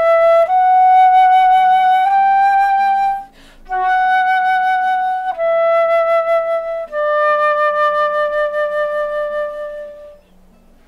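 Concert flute playing a slow tone exercise in held notes: E, up to upper F sharp and G, a quick breath about three seconds in, then back down through F sharp and E to a long D that fades at the end.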